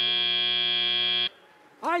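End-of-match buzzer at a FIRST Robotics Competition field: a loud, steady buzz that cuts off suddenly a little over a second in, signalling that the match is over.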